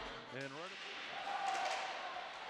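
Faint ice-rink game sound under the broadcast: a low even hiss with a few light clacks, typical of sticks and puck on the ice. A faint held tone sits under it in the second half.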